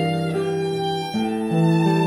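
Live trio of violin, marimba and acoustic guitar playing a Costa Rican patriotic tune. The violin carries the melody in long held notes over the plucked guitar.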